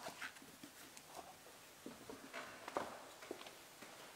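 Faint, irregular footsteps and light knocks as a person walks away from a wooden lectern.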